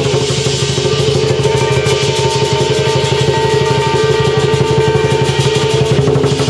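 Lion dance percussion: a fast, unbroken drum roll with hand cymbals and a gong ringing steadily over it.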